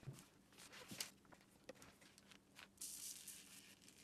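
Faint rustling and light clicks of hands working over newspaper while model-railway scatter is sprinkled onto a small plastic tree, with a short hiss about three seconds in; the footage is sped up.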